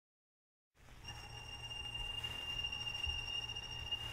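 Total silence for the first second, then a low hum, faint hiss and a thin steady high whine come in and slowly grow louder: playback noise from an LP rip in the gap ahead of the next track.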